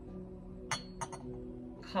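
Two quick clinks of glass against china, the first with a short ring, as a glass teapot is set down on its ceramic warmer stand, over soft steady background music.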